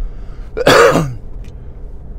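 A man clears his throat once, a short loud rasp a little over half a second in, over the steady low hum of the car driving.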